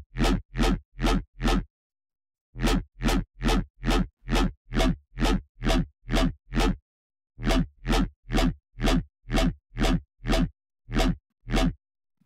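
Synthesized dubstep bass patch in Xfer Serum, with a deep sub under a gritty, messy upper layer and distortion just added. It is played as short, repeated notes, about three a second, in three runs with brief pauses between them.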